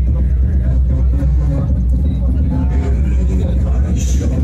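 Loud, steady low bass rumble from car audio sound systems, with indistinct voices over it.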